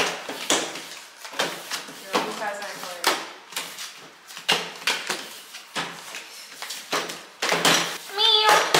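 Playing cards being passed and set down on a tabletop in quick succession: irregular sharp taps and slaps, about one or two a second, with low voices in between.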